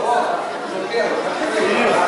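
Many voices talking at once in a large gym hall: the spectators' chatter.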